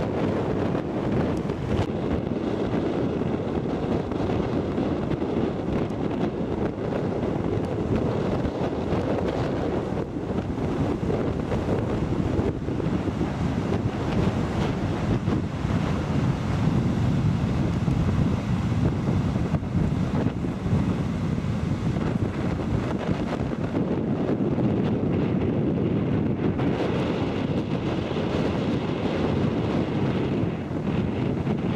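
Wind buffeting the microphone over the steady rush of ocean surf breaking on a sandy beach.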